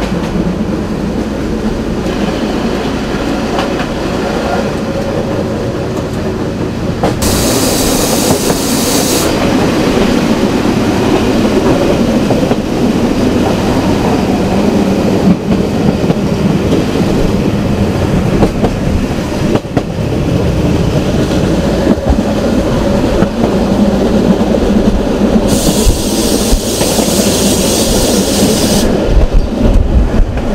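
Ferrovie della Calabria narrow-gauge diesel railcar running along the track with a steady rumble and occasional clacks over the rail joints. Twice, about seven seconds in and again near the end, a high-pitched squeal lasting two to three seconds rises over the rumble.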